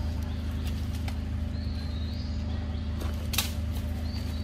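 Outdoor background: a steady low hum with faint, short high chirps, broken by a few sharp clicks, the loudest a little after three seconds in.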